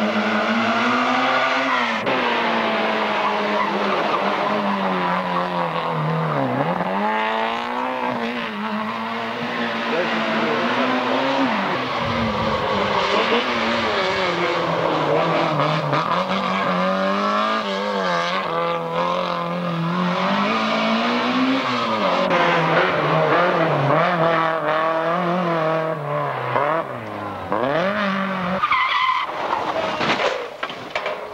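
Rally cars (Peugeot 205s among them) driven hard through a special stage, their engines revving and dropping again and again as they shift gears and brake for corners.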